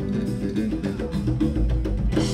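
Live West African fusion band playing a fast, dense groove: electric bass, drum kit and hand drums, with kora and electric guitar, in the closing bars of a song.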